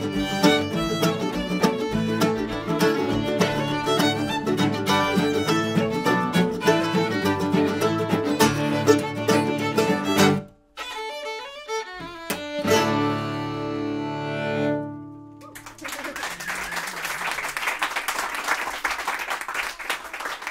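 A string band of fiddle, mandolin, acoustic guitar and cello plays a tune that cuts off suddenly about halfway through. A few more notes and a final held chord follow and die away, then the audience applauds.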